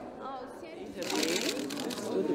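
Several young women's voices chatting indistinctly, with a rough hissing, rustling noise joining in about a second in as the sound gets louder.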